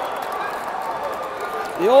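Crowd murmur in a large gym: many indistinct voices overlapping. A man's voice cuts in loudly near the end.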